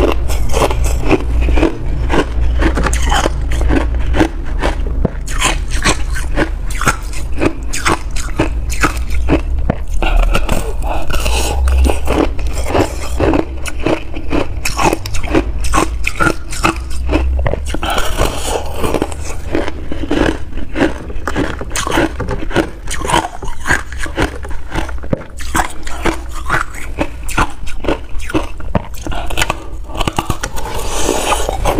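Close-up crunching of a chunk of frozen slush ice being bitten and chewed, a dense run of crisp crunches.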